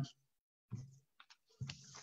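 A mostly quiet pause in a man's speech, with two faint short clicks a little over a second in and a brief low vocal sound just before them.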